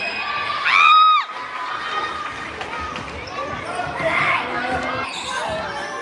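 Indoor basketball game sounds in an echoing sports hall: a ball bouncing and players' voices, with a brief shrill high-pitched call about a second in.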